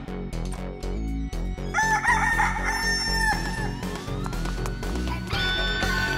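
A rooster crow sound effect, long and drawn out: a wavering call about two seconds in, a rising glide, then a held final note near the end. It plays over background music with a steady low beat.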